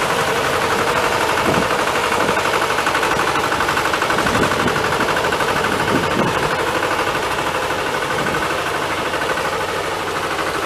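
Farm tractor engine running steadily under load with an even rapid beat as it pulls a turning plow through the soil.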